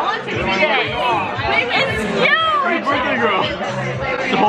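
Several people's voices talking over one another in lively chatter, with no single clear speaker.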